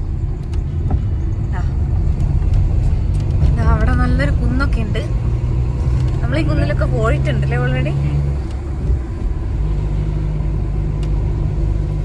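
Car engine and road noise heard from inside the cabin while driving at a steady pace: a loud, steady low drone with a low hum that dips briefly about eight or nine seconds in.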